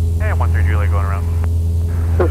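Steady low drone of a Cessna 172SP's four-cylinder engine and propeller, heard from inside the cockpit with power up for a go-around. A short stretch of speech runs over it in the first second.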